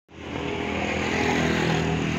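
A small engine running steadily.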